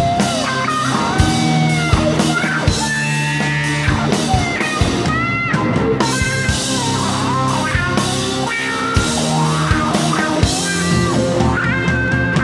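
Rock band playing live: electric guitars, bass and drum kit, with a lead melody line that slides up and down in pitch over a steady drum beat.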